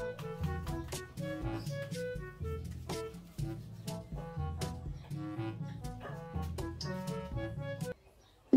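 Amazon Fire TV Stick setup sound-test music, an instrumental tune with a bass line and short melody notes, playing through the LG TV's speakers to check the volume. It cuts off suddenly at the very end.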